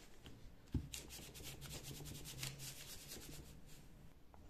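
A clothes iron slid back and forth over layers of newspaper, a faint repeated scraping rub of the soleplate on paper, with one light knock about three-quarters of a second in. The iron is pressing wax out of a batik sample into the newspaper.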